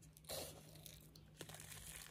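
Faint crinkling of a solid PVA bag of pellets being handled, with a slight rustle about a quarter second in and a couple of soft clicks.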